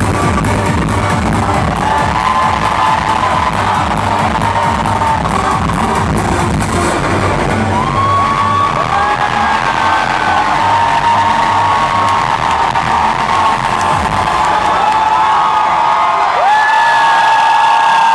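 Live electronic darkwave music with a steady beat, heard from the crowd; from about halfway, audience whistles and cheers rise over it.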